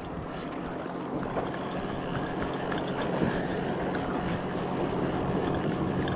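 Boat motor running with a steady low hum that grows gradually louder, over water and wind noise.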